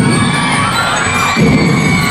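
A drum and lyre band playing while a large crowd cheers and shouts; the drums drop back for about the first second and a half, then come back in strongly.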